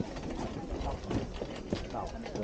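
Footsteps of several people knocking irregularly on the wooden plank deck of a pedestrian suspension bridge, with faint voices behind.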